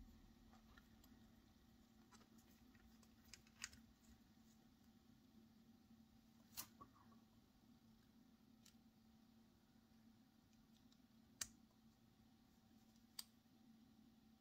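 Near silence broken by several faint, sharp clicks at irregular intervals, over a faint steady hum. The clicks come from the plastic piston mechanism of a TWSBI Eco fountain pen and its flat metal piston wrench being handled and fitted together.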